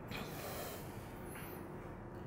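A faint breath through the nose close to the microphone just after the start, then low room tone.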